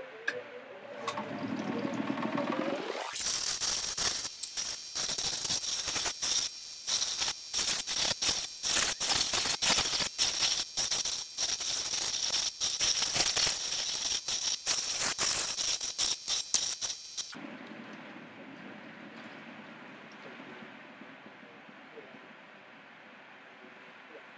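A stone pressed against the spinning 220-grit hard diamond wheel of a six-wheel cabbing machine: loud gritty grinding with rapid scratchy pulses, from about three seconds in to about seventeen seconds. Then the stone comes off and only the machine's quieter running sound is left.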